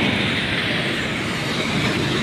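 Steady, noisy mechanical rumble of sugar mill machinery, with no distinct beat or single event.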